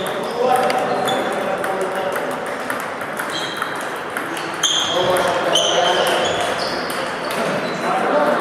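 Table tennis balls being hit in several rallies at once: quick clicks of celluloid balls on rubber paddles and on the tabletops, some with a short high ping.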